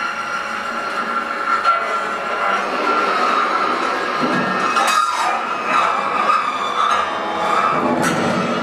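Free-improvised ensemble music: a dense, steady, grinding texture with a held high tone running through it and a few sharp metallic strokes, close to the screech of train wheels.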